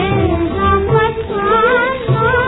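A woman sings a 1940s Hindustani film song with instrumental accompaniment, played from an old 78 rpm record. The sound is narrow and dull, with no top end, and she holds a wavering note in the second half.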